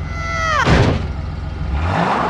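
Cartoon sound effects: a whistle sliding down in pitch that ends in a thud under a second in, then a garbage truck's engine running steadily.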